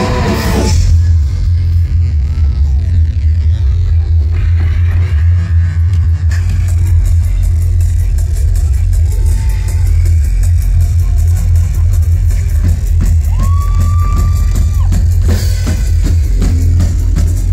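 Live band playing loud amplified rock music, dominated by heavy, continuous bass, with drums and guitar. A high note is held for about two seconds near the end.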